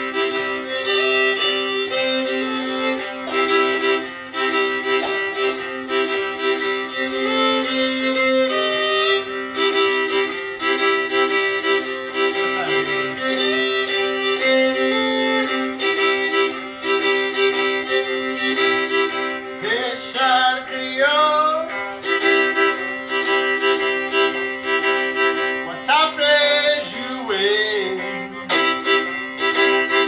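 Two fiddles playing a Cajun tune together in traditional twin-fiddle style, one line carrying the melody over steadily held drone notes. A few sliding, wavering notes come through about two-thirds of the way in.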